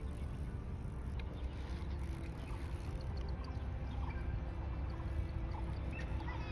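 Outdoor ambience: a steady low rumble with faint, scattered short chirps in the distance.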